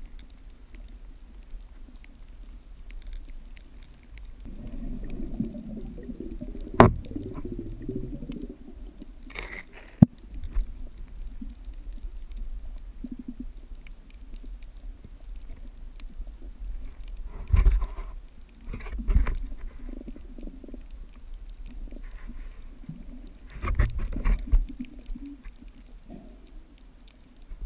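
Underwater sound picked up through a GoPro's housing: low rumbling and gurgling of water moving around the camera, with two sharp clicks about seven and ten seconds in and several louder low bumps later on.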